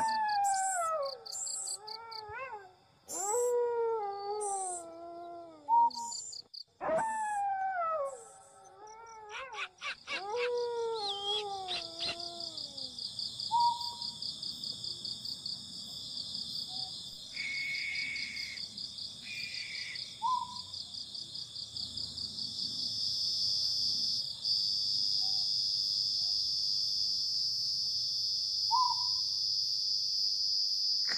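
Night animal sounds: a series of falling calls, each with several overtones, repeats through the first twelve seconds over rapid high clicking. Then a steady, high-pitched insect trill takes over and grows louder, with a few short chirps scattered through it.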